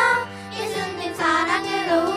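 Children's choir singing a Korean worship song into microphones over instrumental accompaniment; a held note ends about a quarter second in and a new phrase rises about a second later.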